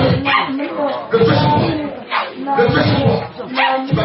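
Loud voices shouting and crying out without clear words, in bursts about a second long.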